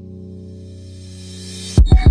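Dubstep music: a sustained low bass chord with a noise sweep swelling up over it, then three heavy kick drum hits in quick succession near the end.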